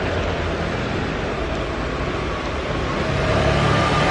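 Steady city street traffic noise: a continuous hiss and low rumble that swells slightly near the end, as if a vehicle is approaching.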